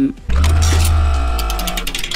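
A short music sting between news items: a sudden deep bass hit with a held chord that fades over about a second and a half, with rapid ticks in its second half.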